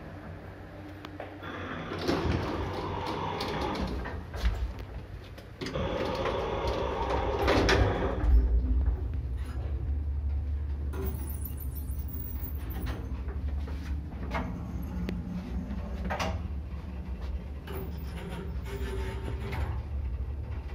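SamLZ passenger lift from 1984: its centre-opening sliding doors open with a rattling rumble about two seconds in and close again around six seconds in. A heavy thump follows as the car starts, then the steady low hum of the car travelling in the shaft, with scattered clicks.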